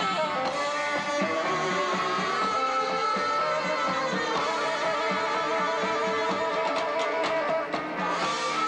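Live band music with an electric guitar to the fore over a steady rhythm section, with a few sharp hits near the end.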